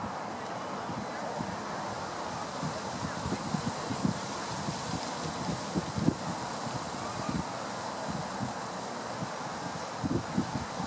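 Wind buffeting the microphone in uneven low rumbles over a steady outdoor hiss, with stronger bumps about four and six seconds in.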